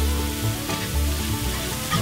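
A roux of flour, bacon grease and chopped onion sizzling in a skillet as a wire whisk stirs it, being cooked until it darkens and loses its raw flour taste. Soft background music plays along.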